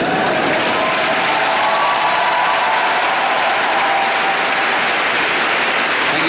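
Large convention-hall audience applauding steadily, with some voices calling out in the crowd.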